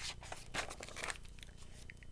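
A picture-book page being turned by hand: faint paper rustling with a few light clicks.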